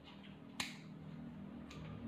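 Dog nail clippers snipping through a toenail: one sharp clip about half a second in, and a fainter one near the end.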